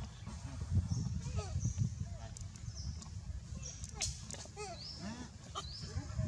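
Short arching squeaks from animals, with short high rising chirps repeating every second or so, over a steady low rumble.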